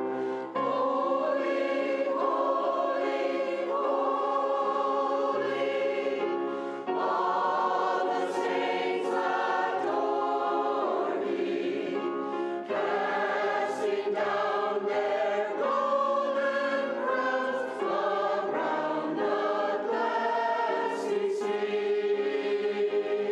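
Mixed church choir singing an anthem in parts, accompanied by piano.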